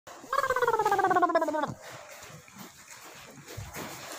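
An animal's call: one wavering, bleat-like cry that falls slowly in pitch and lasts about a second and a half.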